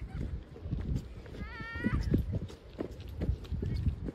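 Irregular thudding steps on a trail, with a short, high-pitched rising call about a second and a half in.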